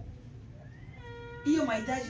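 Low room hum, then about a second in a short, high, drawn-out vocal tone, followed halfway through by a woman speaking loudly into a microphone.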